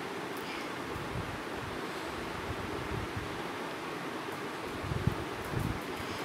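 Steady background hiss with faint rustling as a tint brush wipes bleach paste off a hair swatch held over foil. A few soft knocks come near the end.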